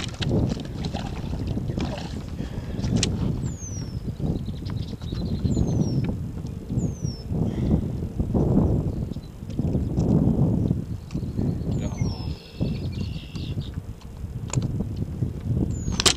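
Wind buffeting the microphone in rumbling gusts, with a few faint short falling whistles. Near the end a bowfin thrashes on the boat's carpeted deck with sharp knocks and scuffles.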